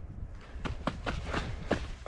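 Footsteps of Montrail FKT 3 trail running shoes on a gritty tarmac road: a quick, irregular run of short scuffing steps.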